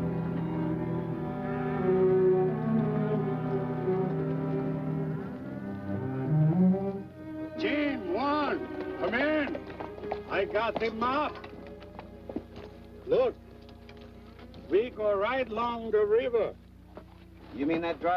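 Orchestral film score with low strings, which ends about seven seconds in. A string of short, overlapping rising-and-falling calls follows.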